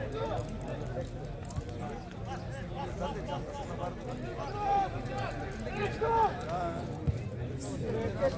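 Distant, overlapping voices calling and chatting at an amateur football match, with two louder calls about five and six seconds in. A single sharp knock comes near the end.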